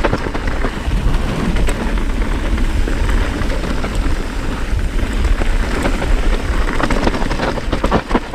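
Mountain bike tyres rolling fast over loose dirt and gravel, a continuous crunching hiss dotted with many small clicks and rattles from stones and the bike. A heavy low rumble from wind on the camera microphone runs underneath.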